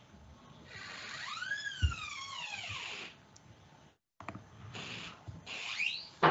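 A high-pitched whine that rises and then falls over about two seconds, followed after a brief dropout by more short noises and a rising cry near the end, heard through a video-call microphone.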